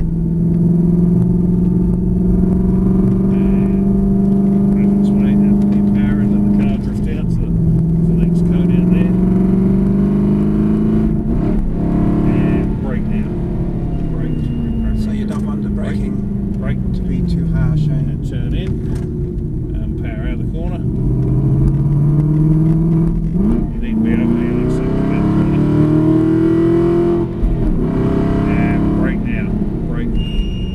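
V8 Aston Martin Vantage engine heard from inside the cabin, pulling hard on track. The engine note climbs, then drops sharply at gear changes about 7 and 12 seconds in. It falls away off the throttle into a corner, climbs again under acceleration, and drops once more near the end.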